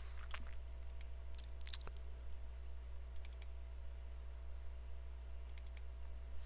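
Computer mouse clicking several times, single clicks and a few quick runs of clicks, over a steady low electrical hum.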